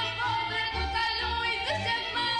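Women singing a Romanian folk song in an ornamented traditional style, accompanied by a folk orchestra of fiddles with a low bass line.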